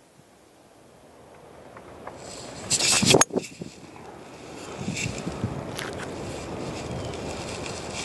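A golf swing: the club swishes through and strikes sharply at impact about three seconds in, over a steady rush of wind on the microphone.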